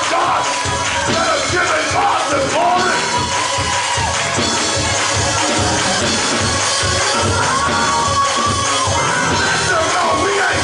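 Congregation cheering and clapping in a praise break over loud church band music with a steady beat.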